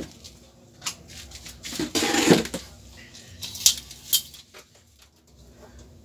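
A steel tape measure being fetched and pulled out: scattered handling clicks and knocks, the loudest a short rattle about two seconds in, then two sharp clicks near the middle.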